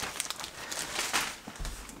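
A shopping bag rustling and crinkling as a hand rummages through it, with irregular small crackles.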